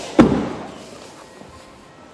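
Rear door of a 2010 Mazda 3 hatchback being shut: one solid thud about a quarter second in, dying away over the next second.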